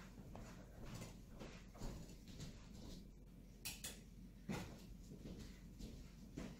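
Quiet room with a few faint knocks and bumps from someone moving about elsewhere in the house, the clearest about three and a half and four and a half seconds in.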